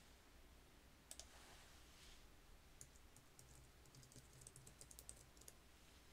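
Faint typing on a computer keyboard: a couple of keystrokes about a second in, then a quick run of keystrokes from about three to five and a half seconds, over a low, faint room hum.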